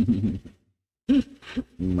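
A man's low, drawn-out wordless vocal sounds, like a hum or 'mmm': one at the start and another about a second in, after a short silent gap.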